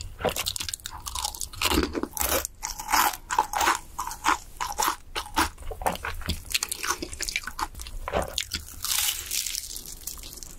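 Close-miked crunching and chewing of crisp fried chicken: rapid, irregular crackles of the crust being bitten and chewed, with a denser crisp stretch near the end as an egg tart is handled and bitten.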